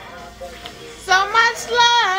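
A woman singing along to a slow R&B love song playing from a TV, holding long notes on "love, oh" from about a second in; the first second is quieter, with only the song in the background.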